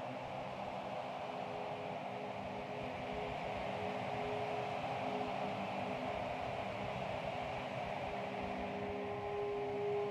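A steady hiss-like electronic drone with faint held low tones, one of which grows a little stronger near the end: the opening of a live ambient electronic piece played on synthesizer and laptop.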